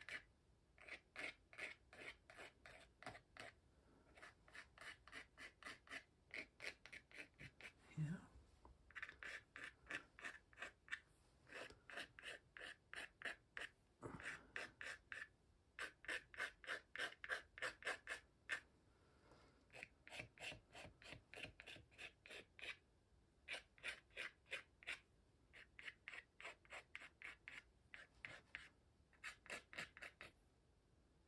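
Faint scratching of a thin pointed tool on watercolor paper, dragging wet paint out in short, quick strokes. The strokes come about four a second, in runs of a few seconds with brief pauses between.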